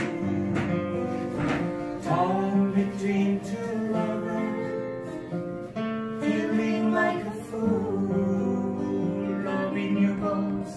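Two acoustic guitars strummed without amplification while a man and a woman sing a slow song together. A single sharp tap sounds right at the start.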